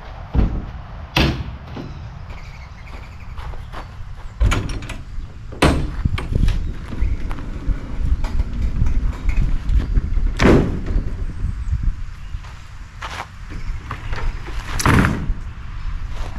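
Rear ramp door of an enclosed car trailer being unlatched and lowered by hand: a series of separate metal clanks and knocks from the latches and hinges, with the loudest, ringing clanks about two-thirds of the way through and near the end as the ramp comes down.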